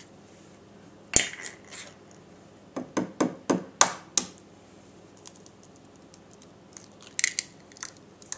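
Raw eggs being handled and cracked by hand for batter: a sharp knock about a second in, a quick run of about six knocks around three to four seconds, and a crackle of breaking eggshell near the end.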